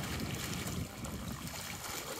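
Wind buffeting the microphone, with a rumble that is strongest in the first second, over the soft wash of small waves lapping at a lakeshore.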